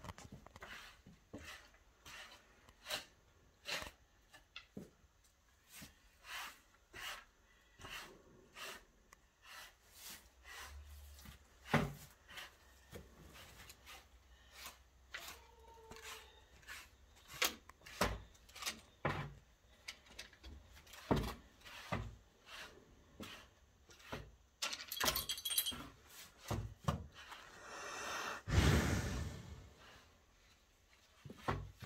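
Scattered clinks and knocks of a cow's metal neck chain and rustling as she is scratched under the neck, with two louder rushes of air near the end from the cow breathing out close to the microphone.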